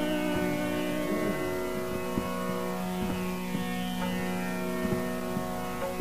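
Tanpura drone sounding steadily with its strings plucked in turn, between the singer's phrases of a Hindustani classical vocal performance, with a faint soft melodic glide about a second in.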